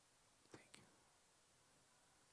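Near silence: room tone, with a brief, faint whisper about half a second in.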